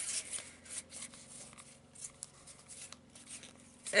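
Tarot cards being handled and slid against one another: soft, scattered rustles and light taps.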